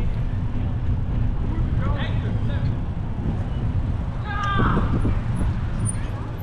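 Outdoor ambience on a moving bike ride: a steady low rumble, with passers-by's voices briefly about two seconds in and louder about four and a half seconds in.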